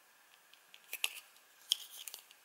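Kitchen knife blade cutting notches into the rim of a plastic bottle cap: a few short, crisp scraping cuts about a second in, the sharpest one near the end.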